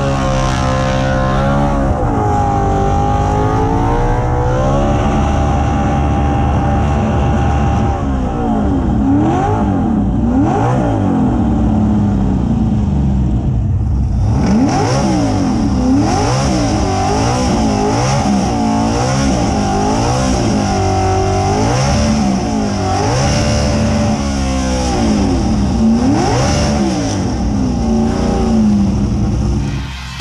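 A burnout car's carburetted engine held at high revs with the wheels spinning, then revved up and down again and again from about eight seconds in.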